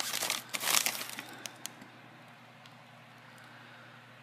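Foil snack pouch crinkling as it is handled and turned over: a burst of rustling in the first second or so, then a few faint crackles.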